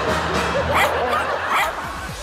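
A dog barking, a quick run of high yaps about half a second in, over background music.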